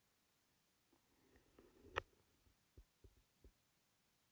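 Near silence: quiet room tone, broken by a faint click about halfway through and a few soft low thumps after it.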